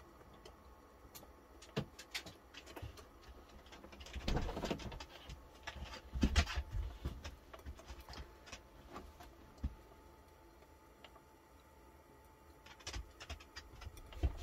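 Faint, irregular popping and crackling of an egg frying under the closed lid of an electric omelette maker, with two louder, rougher sounds about four and six seconds in.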